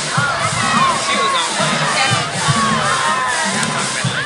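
A crowd of parade spectators cheering and shouting, many voices at once, over the steady low beat of a marching band's drums.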